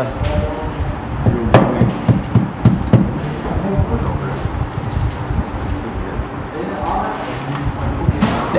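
A few sharp knocks and clicks, the loudest about one and a half seconds in, from a screwdriver working the terminals of a metal electrical control panel, over a background of voices.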